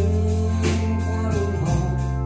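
Country band playing an instrumental passage between vocal lines: sustained held notes, likely from the pedal steel guitar, over bass and a steady drum beat of about two strokes a second.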